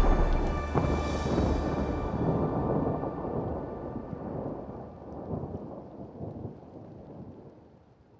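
Thunder-like rumbling sound effect of a magical vanishing, with faint sustained ringing tones above it, slowly fading out and gone shortly before the end.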